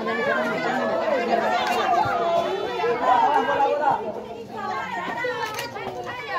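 Spectators talking and calling out over one another at a football match: overlapping chatter of several voices close to the microphone.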